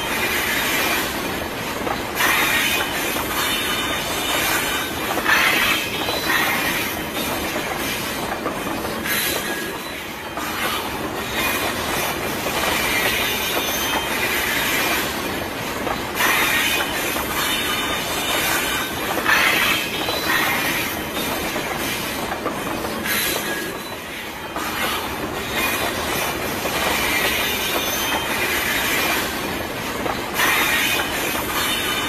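Freight train cars rolling past on the track: a continuous rumble and rattle of the wagons and wheels, swelling louder every few seconds.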